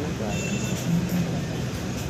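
Outdoor ambience: a steady low rumble with snatches of people's voices nearby.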